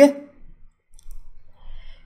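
A man's voice ends a word right at the start, then a quiet pause with a few faint clicks and a soft breath.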